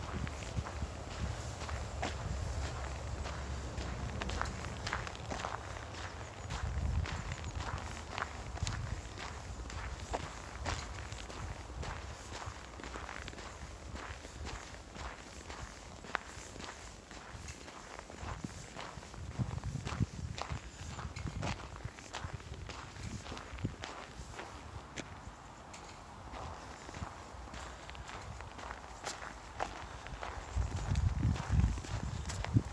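Footsteps of a person walking on snow at a steady pace, with a low rumble coming and going.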